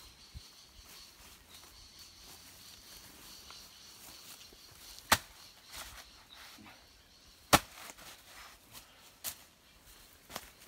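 A few isolated sharp cracks over a quiet outdoor background: a faint one near the start, a loud one about five seconds in, the loudest about seven and a half seconds in, and a smaller one near the end.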